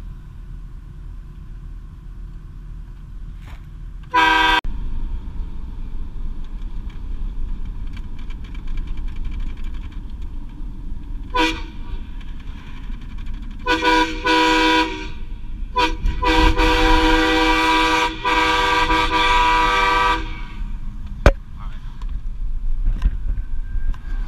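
Vehicle-mounted train horn sounding a short blast about four seconds in and a brief toot near the middle, then two quick blasts and a long blast of about four seconds, heard over the truck's engine and road noise in the cab.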